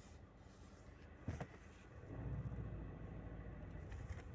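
Low rumble of a 2011 VW Jetta on the move, heard from inside the cabin, with a single knock about a second in. The rumble grows louder from about two seconds in.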